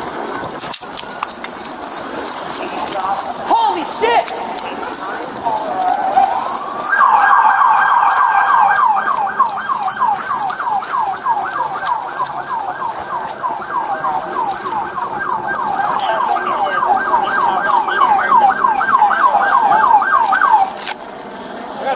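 Police car siren on yelp: a fast, evenly repeating rise and fall in pitch, several sweeps a second, starting about seven seconds in after a few slower sweeps.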